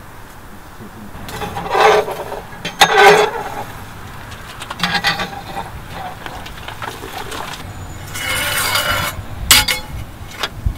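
Metal rake scraping across the brick floor of a wood-fired masonry oven, dragging out the spent coals and ash in a series of separate scraping strokes, the longest near the end.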